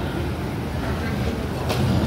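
Food-court background noise: a steady low rumble under faint chatter of other diners, with a short click near the end.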